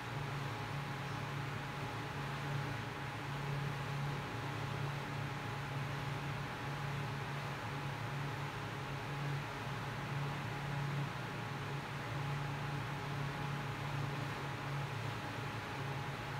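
Steady hiss with a low hum that wavers in strength and a faint steady high tone, the continuous drone of a fan or similar running machine.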